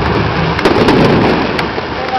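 Fireworks going off in a dense barrage, a heavy rumble with a few sharp crackles, easing slightly toward the end.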